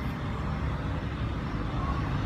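A steady low background rumble.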